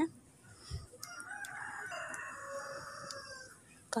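A rooster crowing once, faintly, for about two seconds, starting about a second in.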